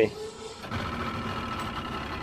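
Outboard motor starting up: it catches under a second in and settles into a steady idle. It started without any throttle.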